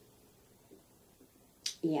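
Quiet room tone, then a brief sharp click near the end, just before a softly spoken 'yep'.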